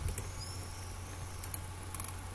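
A few faint computer mouse clicks, one near the start and a couple about one and a half to two seconds in, over a steady low electrical hum.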